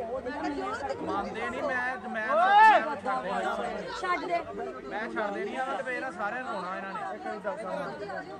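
Men talking together in conversation. One voice rises briefly louder with a rising-then-falling pitch about two and a half seconds in.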